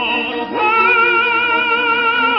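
Operatic tenor singing in Italian: the voice slides up about half a second in and holds one long note with even vibrato, over steady sustained accompaniment.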